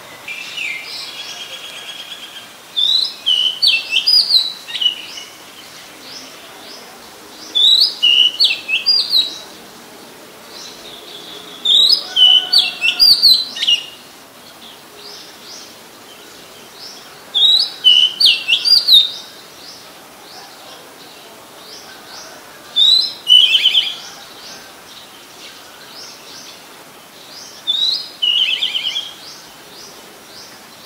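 Oriental magpie robin singing: six short, loud phrases of varied whistled notes, about one every five seconds. Fainter chirping continues between the phrases.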